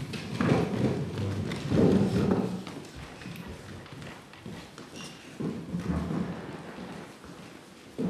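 Irregular thuds and footsteps of several performers moving on a stage floor, loudest in bursts about half a second, two seconds and six seconds in.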